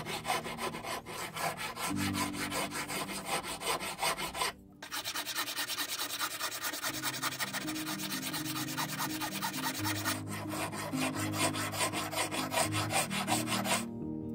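Hand file rasping across a mosaic mechanical-pencil blank of wood segments with silver rings, shaping its octagonal faces in quick, even strokes. The strokes break off briefly about four and a half seconds in and again around ten seconds.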